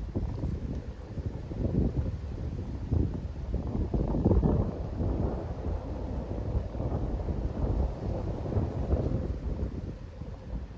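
Wind buffeting the microphone: an uneven low rumble that comes and goes in gusts, strongest about four to five seconds in.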